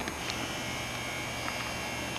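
A small electric motor whining steadily over a low hum for nearly two seconds, stopping at the end, with a few faint clicks.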